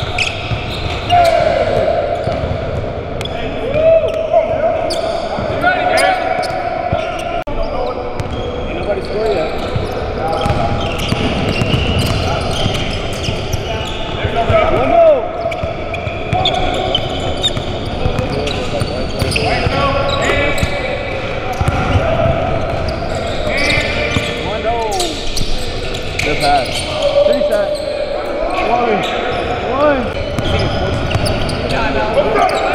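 Basketball game on a hardwood gym floor: the ball bouncing off the floor in scattered sharp knocks, sneakers squeaking in short rising and falling chirps, and players' voices calling out, all echoing in the large hall.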